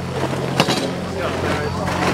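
A steady low mechanical hum with faint voices behind it, and one sharp knock about half a second in.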